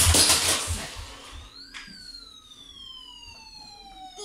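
Thuds and rustling in the first second, then a whistle-like tone that rises briefly and glides slowly down for more than two seconds, like a falling siren or a descending whistle.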